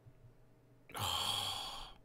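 A man's sigh: one breathy exhale close to the microphone, about a second long, starting about a second in.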